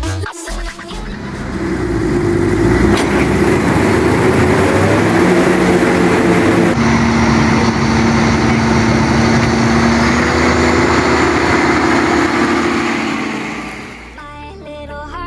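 Claas Mega 370 combine running as it harvests sunflowers, a dense machine noise with a steady low hum that fades in over the first two seconds. About halfway through it changes to a John Deere tractor's engine running as it pulls loaded trailers across the stubble, with a steady held tone, fading out near the end.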